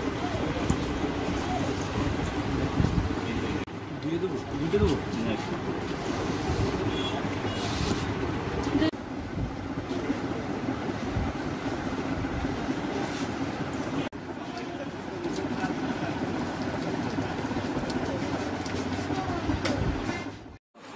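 Several people talking indistinctly over each other in a crowded shop, over a steady background noise.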